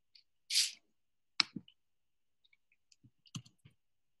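A few sharp clicks and taps from a computer being worked, trying to get a frozen shared slide to advance, with a short hiss about half a second in. Call audio that cuts to dead silence between sounds.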